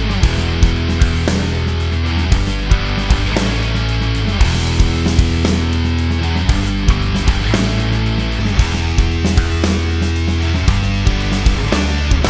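Heavy metal band playing: distorted rhythm guitar through a Revv Generator MkIII amp into a 2003 Mesa Boogie cabinet loaded with Celestion Vintage 30 speakers, close-miked with an SM57 and no EQ, over acoustic drums and electric bass. The take is one of several that compare the tone of Mesa cabinets from different production years.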